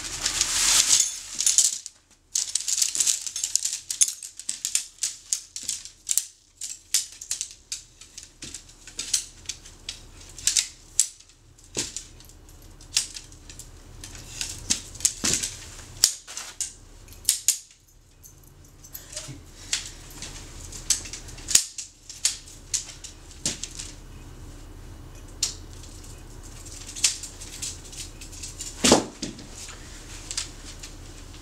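Tent nylon rustling briefly as it is handled at the stuff sack, then a long irregular run of sharp clicks and light rattles as the Copper Spur UL2's shock-corded tent pole sections are unfolded and snapped together.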